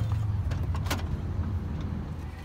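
Low, steady rumble of a car as someone climbs out onto the pavement, with two sharp clicks or knocks just under a second apart, the first right at the start.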